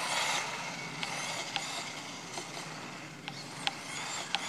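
Small battery-powered RC truggy running on asphalt: its electric motor and tyres make a steady hiss that is loudest at the start and fades as it drives away. A few faint ticks sound along the way.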